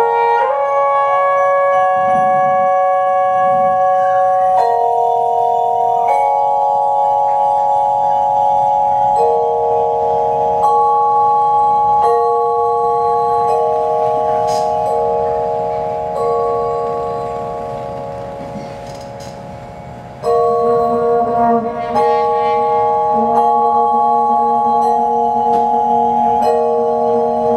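Vibraphone played with yarn mallets, soft chords ringing on and overlapping as the notes change every few seconds. One chord dies away slowly before a new chord is struck about 20 seconds in. A low held note joins it near the end.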